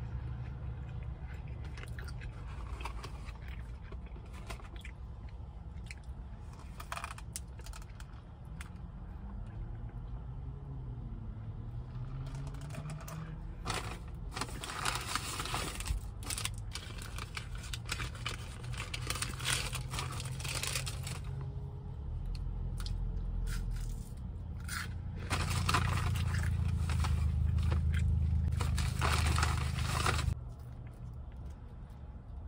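Food wrappers and packets crinkling and tearing in bursts, with crunchy chewing of fast food, over a steady low hum inside a car. The loudest crinkling comes near the end.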